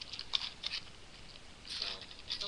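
A few short, soft crackling and clicking handling noises in the first second, with a voice starting near the end.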